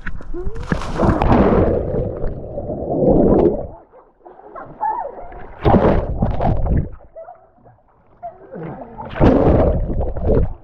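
A person jumping feet-first into a swimming pool with the camera: a splash on entry, then the muffled rushing and bubbling of water around the submerged camera. Further bursts of bubbling and churning come about six seconds in and again near the end, as he moves underwater.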